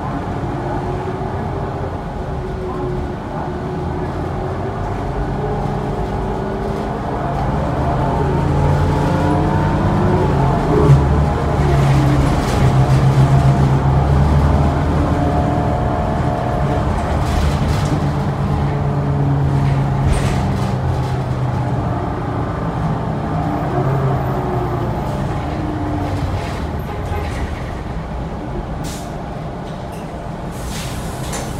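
Cabin sound of a New Flyer Xcelsior XD40 diesel bus under way: engine and drivetrain running, with the pitch climbing and the sound growing louder as the bus accelerates about a third of the way in, then easing off as it slows later on. A single sharp knock about a third of the way in is the loudest moment.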